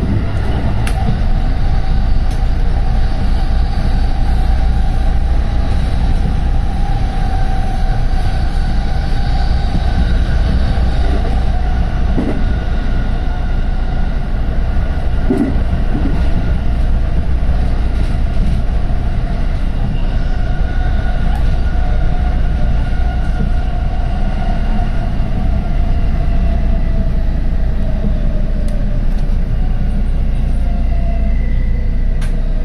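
JR West 223 series 2000-subseries electric train running at speed, heard from behind the driver's cab: a steady rumble of wheels on rail with a constant electric whine over it. Near the end the whine sinks a little in pitch as the train slows into a station.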